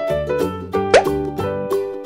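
Upbeat children's background music with evenly repeating keyboard notes. About a second in, a short rising 'plop' sound effect stands out as the loudest sound.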